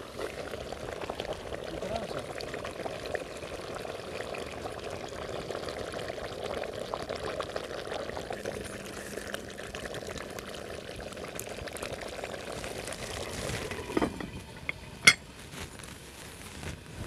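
Potatoes cooking in a metal pot over a wood fire: a steady bubbling sizzle with a spoon stirring in the pot. Near the end, a few knocks and then one sharp metal clink as the lid is set on the pot.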